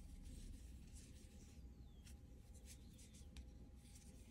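Near silence, with faint scratchy rustling and scattered small ticks of a metal crochet hook pulling cotton yarn through stitches as a treble cluster is worked.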